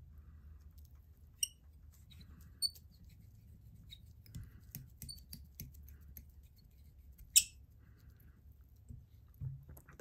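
Fly-tying thread wrapped under hard tension around the hook and a bucktail clump: faint scattered clicks and short squeaks over a low steady hum, with one sharper click about seven seconds in.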